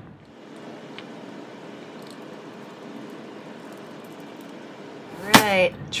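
Cold process soap loaf being pushed through a multi-wire soap cutter: a soft, steady hiss as the wires slice the loaf into bars, with a faint click about a second in.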